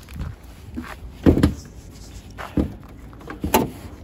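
Footsteps on gravel with three separate knocks, the last a sharp click near the end, as a car's hood is released and raised.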